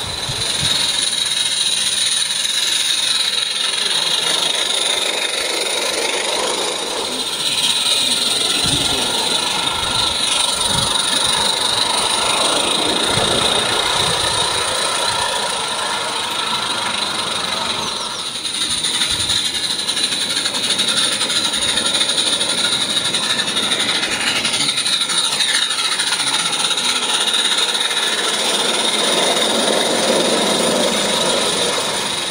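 Small gas-fired live-steam garden railway locomotive on 32 mm gauge track running with a train of coaches: a steady hiss of steam and exhaust with the rattle of wheels on the rails.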